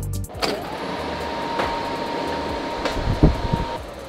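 A door latch clicks, then a steady hum of ventilation with a thin high whine runs, with a few light knocks, and cuts off shortly before the end.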